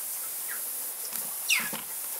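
Misting system nozzles hissing steadily as they spray water over the aviaries, with a bird's short squeak falling in pitch about one and a half seconds in.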